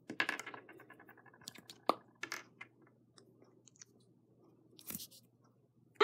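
Small plastic toy figure parts being twisted apart and pressed together in the fingers. The sound is faint: a quick run of rattling clicks, then a few sharp clicks, and a short scrape near the end.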